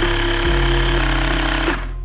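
Xiaomi Mi portable electric air compressor running as it inflates a scooter tyre, a loud, steady mechanical buzz with a hum under it. It cuts off suddenly shortly before the end: the compressor stops itself on reaching the set pressure.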